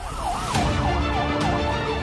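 Police car siren wailing, its pitch sweeping up and down about three times a second, over a low rumble of traffic.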